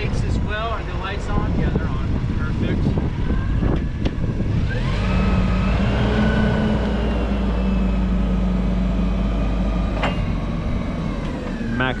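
Doosan GC25P-5 propane forklift's engine rising in revs about four or five seconds in and holding high and steady with a whine as the hydraulics lift the forks up the mast to full height, then easing off slightly near the end.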